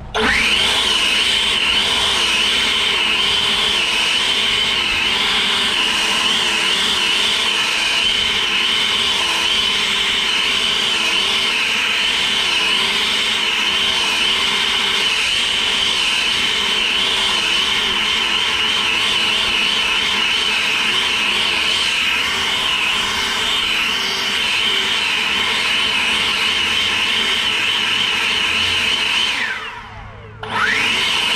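EGO POWER+ 650 CFM battery-powered handheld leaf blower spinning up at once, then running steadily at high power with a high whine. It winds down just before the end.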